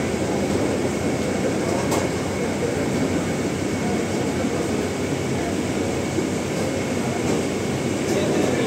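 Steady, fairly loud rumbling noise with a faint high steady whine running through it, like machinery or ventilation running in an enclosed space, with no clear words.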